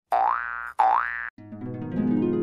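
Two identical cartoon 'boing' sound effects in quick succession, each a pitched tone about half a second long that slides sharply upward. About one and a half seconds in, a held chord of intro music begins.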